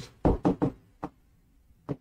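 Marker pen striking and writing on a board: a quick run of three short knocks, then two single taps, about a second in and near the end.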